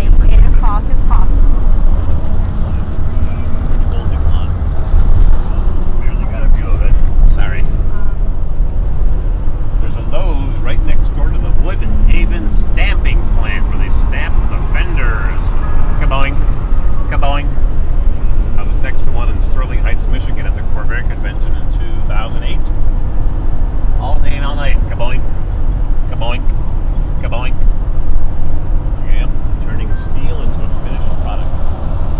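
Steady low road and engine rumble inside the cabin of a vehicle moving at highway speed, with indistinct voices heard at times over it.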